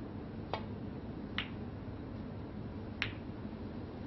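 Snooker shot: the cue tip strikes the cue ball, followed by two sharp clicks of ball contacts on the table, about one and two and a half seconds later.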